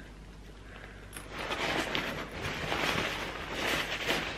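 Thin nylon backpack fabric rustling and crinkling as it is handled and turned over, starting about a second in and going on irregularly.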